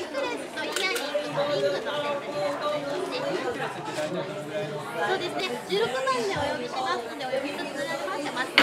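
Crowd chatter: several people talking at once in a busy room.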